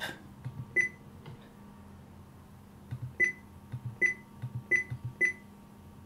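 Key-press beeps from a Whistler TRX-2 digital scanner as its buttons are pressed: one short high beep about a second in, then four more in quick succession near the end, each with a soft button click.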